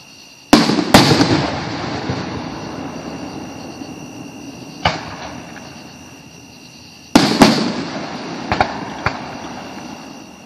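Aerial fireworks exploding. Two loud bangs come about half a second in, followed by a long echoing tail. A single bang comes near five seconds, then another pair of bangs at about seven seconds, with smaller pops after.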